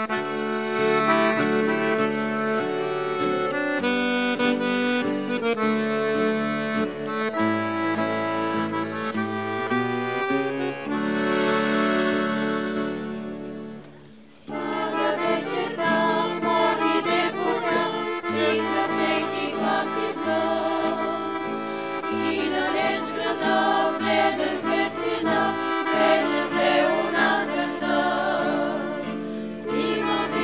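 Accordion playing the instrumental opening of an old Bulgarian urban song, with an acoustic guitar accompanying. About halfway through the music fades out briefly, then starts again, busier.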